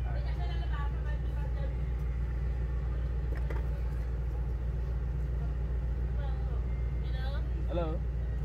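Steady low rumble of an idling car engine heard from inside the cabin, with faint, muffled voices a few times over it.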